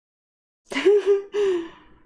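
A woman's sigh with a voiced groan in it, in two short parts starting under a second in, on the heels of her complaint that the wax won't stay in her pan.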